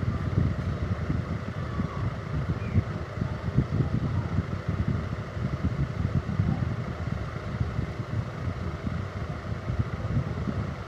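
Steady low rumbling noise, flickering rapidly, of air buffeting the microphone.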